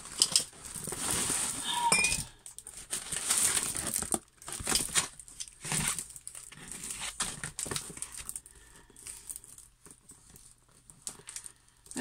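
Clear plastic film on a rolled diamond-painting canvas crinkling as the canvas is handled and spread out. It comes in irregular bursts, louder in the first half and fainter after about eight seconds.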